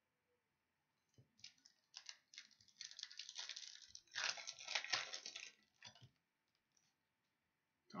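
Crinkling and tearing of a foil baseball card pack wrapper being opened, with cards rustling as they are handled. It comes as crackly bursts that start about a second in and stop about six seconds in.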